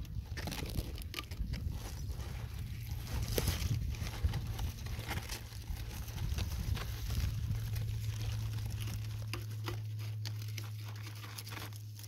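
A knife cutting through a Hubbard squash's thick, fibrous stem, with scattered crackles and snaps from the stem and rustling vines and leaves. A steady low hum runs underneath.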